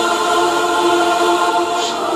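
Choral film background score: a choir singing long, held notes in a slow chant.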